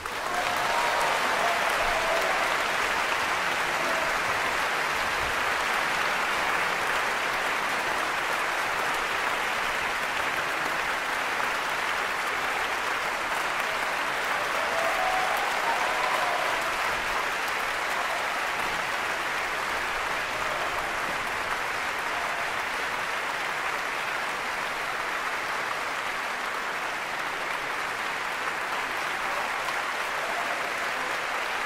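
Large concert audience applauding, a dense, steady clapping that begins as the orchestra's final chord stops and eases off slightly over the half minute.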